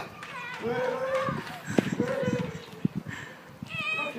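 High-pitched voices calling out without clear words, with a few sharp knocks in between.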